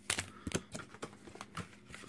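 Light clicks and taps of plastic blister packaging being handled, a few sharp ticks a second with no steady sound beneath.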